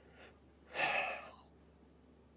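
A man's breath close to the microphone: a faint short breath, then one louder breath lasting under a second.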